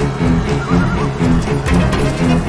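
Suspenseful film score in which low bowed strings repeat a short figure over a deep bass pulse. A faint, short wavering sound rises above the music for a moment about half a second in.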